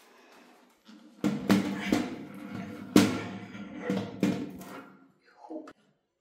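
A large wall clock being handled against the wall: a handful of sharp knocks and bumps, the loudest about halfway through, over a pitched sound that fades out near the end.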